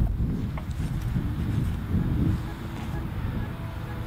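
Low rumbling noise on the camera's microphone, with a few faint ticks; it eases off near the end.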